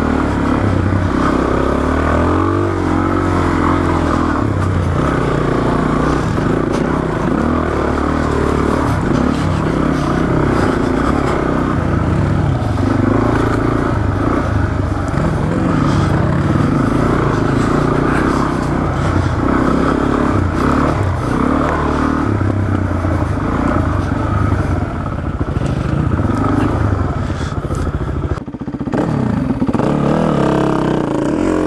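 Suzuki DR-Z400S single-cylinder four-stroke engine running on a dirt trail, its pitch rising and falling with the throttle. It drops away briefly near the end as the bike slows to a stop.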